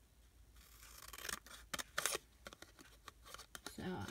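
Scissors cutting through thin cardboard packaging in a series of snips.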